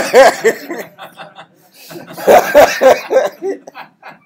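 Loud laughter in two bouts, the first right at the start and the second about two seconds in, each a quick run of short ha-ha pulses.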